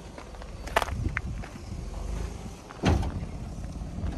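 Lexus RX300 SUV crawling over rutted soft dirt: a low steady rumble from the vehicle, broken by a few sharp knocks, the loudest about three seconds in.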